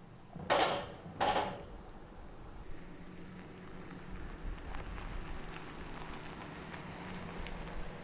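A Chevrolet Silverado pickup truck rolling slowly over a gravel road, its engine a low steady rumble with small crunches and ticks from the tyres that grows slightly louder as it comes close. Two short bursts of noise come about half a second and a second and a quarter in.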